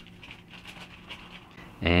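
Clear thin plastic bag rustling faintly as it is handled and draped over a small seed-starting pot.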